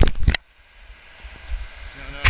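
Skis scraping and knocking on hard-packed snow, loud for the first half second, then a quieter steady rush of wind on the microphone with a few small clicks.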